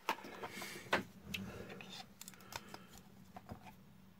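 Light clicks and knocks of a plastic wall faceplate and a 12 V USB socket and voltmeter panel being handled on a worktop, the sharpest about a second in.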